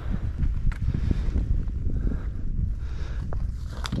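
Wind buffeting the camera's microphone: an uneven low rumble, with a few faint clicks.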